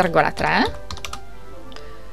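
Computer keyboard keystrokes: a quick run of taps in the first second or so as a number is typed into a box, over faint background music.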